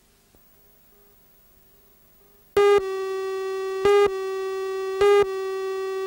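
Near silence, then about two and a half seconds in a steady, buzzy electronic tone starts suddenly, with a louder beep about once a second: the line-up tone and count pips of a videotape countdown leader.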